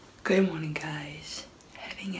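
A woman's voice speaking quietly in a short phrase that stops about a second and a half in.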